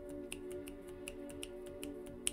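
Soft background music with sustained tones, over a quick, irregular run of light clicks, about five or six a second, from tarot cards being shuffled by hand.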